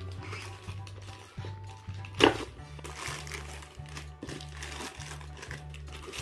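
Background music with a steady low bass line. About two seconds in, one sharp tearing crinkle as the plastic mailer bag is pulled open.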